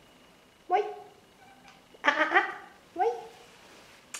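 Siberian cat meowing: about four short, rising meows, the loudest a pair about two seconds in.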